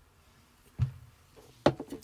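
Drinking from a drink can: mostly quiet, with a single swallow a little under a second in, then a short sharp knock and a few small clicks near the end.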